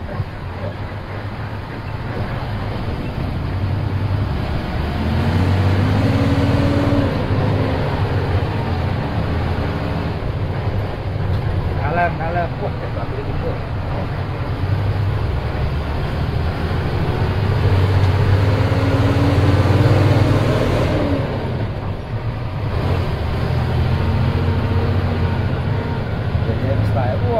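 Bus diesel engine heard from inside the cabin as the bus is driven through the terminal. The engine note rises and swells twice as the bus accelerates, about five seconds in and again a few seconds before the end, then eases off.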